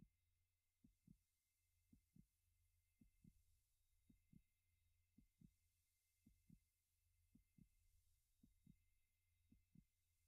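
Near silence, with a faint low double thump repeating about once a second in a heartbeat-like rhythm.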